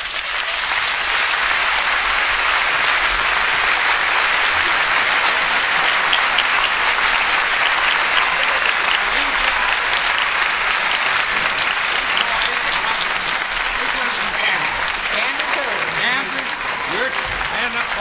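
Studio audience applauding steadily at the end of a song, with a man's voice coming in over the applause near the end.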